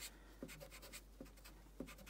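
Faint rubbing of a pencil's rubber eraser on drawing paper, erasing pencil lines, with a few light ticks scattered through it.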